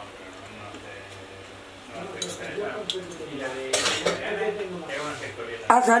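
Cutlery clinking and scraping against a plate in a few sharp clicks, starting about two seconds in, with the loudest near four seconds.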